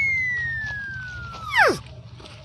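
A whistle-like comedy sound effect: one long tone slides slowly down in pitch and fades. About one and a half seconds in it ends with a quick, louder plunge downward.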